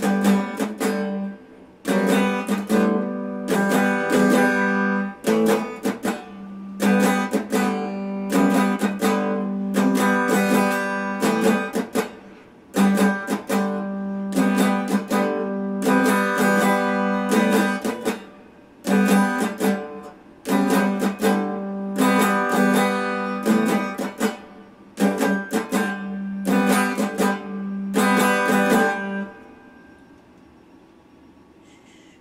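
Electric guitar strumming chords in a repeating pattern, each phrase a few seconds long with short breaks between them; the playing stops shortly before the end.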